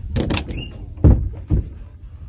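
An interior door being opened: a rustle, then a loud low thud about a second in and a second thud half a second later.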